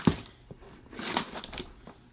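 Faint rustling and scraping of a small cardboard box being handled and slit open with a folding knife, a little louder about a second in.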